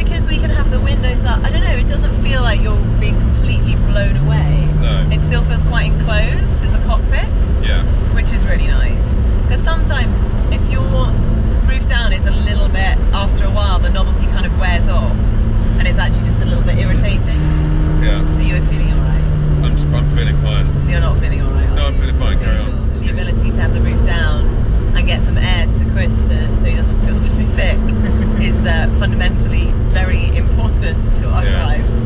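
McLaren 570S Spider's twin-turbo V8 running under way with the roof down, over steady wind and road noise. Its note steps up and holds for a couple of seconds about four seconds in, and again for a few seconds near the middle. Voices are heard over it.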